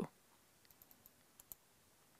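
Near silence with a few faint, short clicks about the middle, from a computer mouse being clicked to advance a presentation slide.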